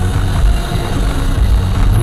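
Steady road and engine noise inside a car's cabin at motorway speed: a low drone with tyre roar over it.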